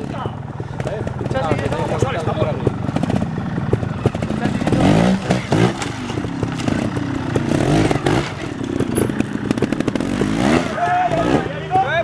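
Trials motorcycle engine being blipped and revved in short bursts as the bike climbs a rock step, with rises in pitch about halfway through and again near the end.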